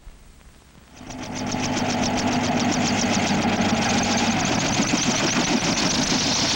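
After about a second of low hiss, a loud machine clatter starts: a fast, even rattle over a steady hum, holding steady.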